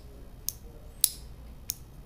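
Three light clicks, about half a second apart, from a small black plastic electric-kettle part being handled and worked in the fingers.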